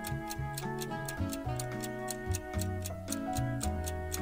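Countdown clock ticking at a steady quick pace over light background music with a bass line and melody.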